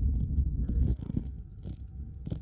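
Low rumble of tyre and road noise heard inside a moving car's cabin on cracked pavement, louder in the first second, with a few light knocks after it.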